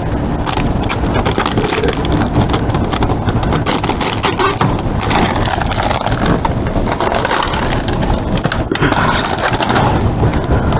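Plastic trash bags and cardboard food boxes rustling and crinkling as a reach-grabber pokes and pulls through dumpster contents, over a steady low rumble.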